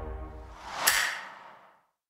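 Disney+ logo sound effect: the last chord of the music fades, then a whoosh swells to a sharp peak with a bright ring just under a second in and dies away.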